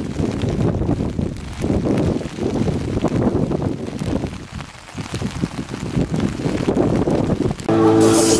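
Wind buffeting the microphone: a gusty, uneven low rumble that eases briefly about four and a half seconds in.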